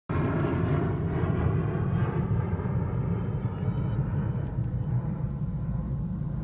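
Aircraft-engine rumble that starts abruptly, deep and steady, with a set of higher engine tones that slowly fade away over the seconds.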